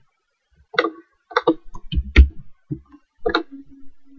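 A scattered run of sharp clicks and knocks close to the microphone, the loudest a dull thump a little after two seconds in. Near the end a faint low steady hum begins.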